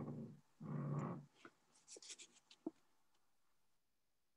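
Two short, low, hummed voice sounds over a call microphone, then a few faint clicks and ticks.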